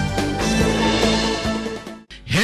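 Instrumental title-sequence music with held notes, fading out near the end.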